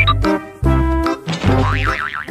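Playful background music with a bouncy bass beat; near the end a wobbling pitch-glide sound effect rises and falls a few times.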